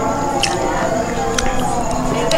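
Eating sounds: a metal spoon scooping soft, moist rice and meat off a teak leaf, with two sharp spoon clicks about half a second and a second and a half in, and chewing.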